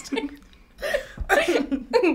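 A small group of young people laughing: a brief laugh at the start, a short lull, then louder laughter from just under a second in.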